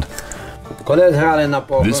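A man speaking over music: a quieter moment, then a voice from about a second in.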